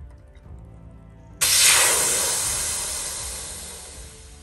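Air rushing out of an inflatable roof-top tent's valve as it is opened to deflate the tent: a loud hiss starting suddenly about a second and a half in and fading steadily as the pressure drops.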